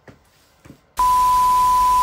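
A couple of faint clicks, then about a second in a TV-static sound effect cuts in suddenly: loud hiss with a steady, high beep tone held over it.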